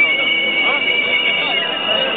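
High-pitched whistles blown in long, steady blasts over the chatter of a crowd. One whistle slides up at the start, holds, and drops away near the end, while another holds a slightly higher note throughout.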